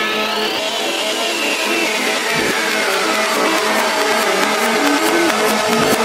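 Psytrance track played in reverse: sustained synth tones with a long falling pitch sweep, and rhythmic percussion ticks building near the end.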